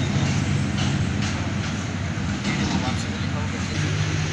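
A vehicle engine idling steadily, with faint voices of people talking in the background.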